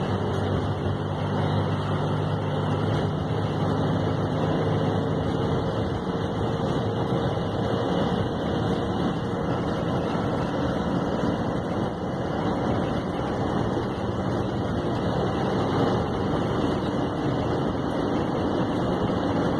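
Intercity passenger coach running at highway speed, heard from inside the cab: a steady engine drone under loud, even road and wind noise. The engine's tone stands out most in the first few seconds, then sinks into the road noise.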